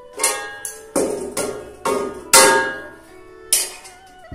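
A metal utensil clanking against a black wok about six times while food is stirred in it, each knock ringing briefly, the loudest about two and a half seconds in. Faint background music runs underneath.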